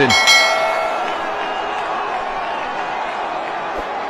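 A bright bell-like notification chime rings once at the start and fades within about a second, the sound effect of a subscribe-bell animation laid over the broadcast. Under it, steady stadium crowd noise.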